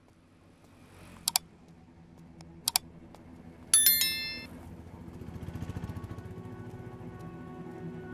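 Horror film score: a low drone swells up, broken by two sharp double clicks and then a loud, bright metallic chime strike that rings for about a second, after which held tones build steadily.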